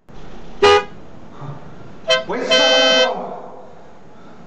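Car horn honking three times: a short honk, a brief beep about a second and a half later, then a longer honk of about half a second. A steady hiss cuts in just before the first honk.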